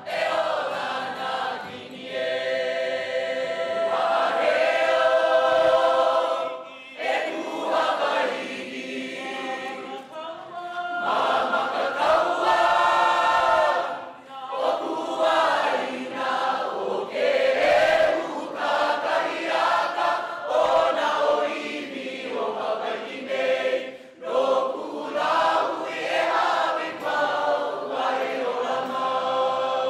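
A large stage cast singing together as a choir, in long held phrases with brief breaks between them.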